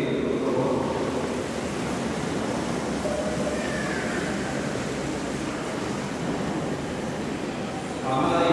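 Steady wash of crowd noise from a large congregation in a big echoing hall, easing slightly over the seconds.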